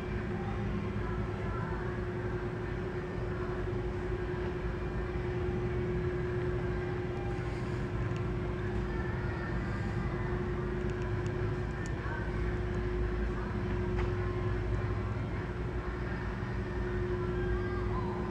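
Steady low hum of a large room's background machinery, with one constant mid-pitched tone and a few faint clicks.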